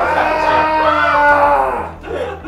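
A person's long, loud drawn-out yell lasting nearly two seconds, its pitch rising and then falling before it fades out.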